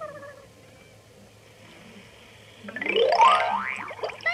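A cartoon-style sound effect: a pitched tone sweeps steadily upward for about a second near the end. It comes after a short falling tone at the start, with music underneath.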